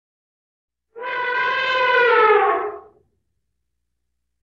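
An elephant trumpeting once: a single brassy call of about two seconds that slides down in pitch near its end.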